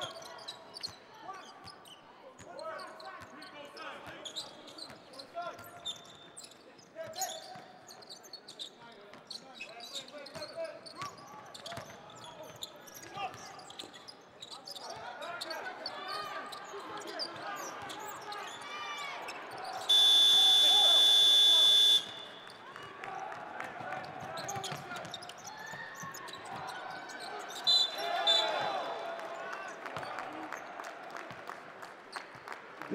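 Basketball being dribbled on a hardwood court amid arena noise. About two-thirds of the way through, a loud arena buzzer sounds one steady tone for about two seconds.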